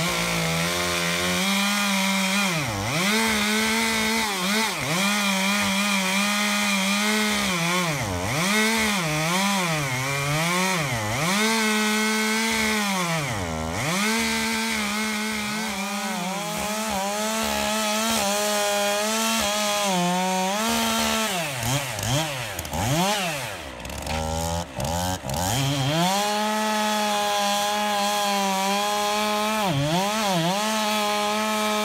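Two-stroke Stihl chainsaw running at high throttle and cutting through a large post oak log. It comes up to full speed right at the start. The engine pitch keeps dropping and climbing back as the bar is worked in the cut: a dull chain that cuts slowly.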